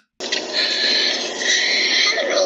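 A young boy crying and wailing in long, sustained, high-pitched sobs. A woman shouts "Look at me!" over it.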